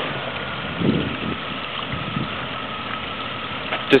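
Jeep Cherokee engine running at low revs as the vehicle crawls slowly over rocks, a steady low drone that swells briefly about a second in.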